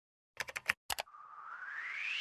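Intro sound effects for an animated station logo: a quick run of about six sharp, typing-like clicks, then a whoosh that rises in pitch and grows louder.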